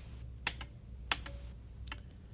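Small toggle switches on a level-sensor demo panel being flicked off one at a time, stepping the simulated wet-well level down: three sharp clicks about three-quarters of a second apart.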